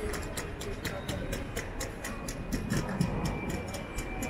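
Busy airport terminal ambience: a murmur of travellers' voices and background music, with a rapid, even clicking at about five a second. A steady thin tone comes in about three seconds in.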